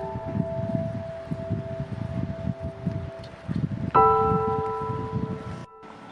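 Slow, gentle solo piano music. Held notes ring on and fade, and a new chord is struck about four seconds in. The sound cuts out briefly near the end.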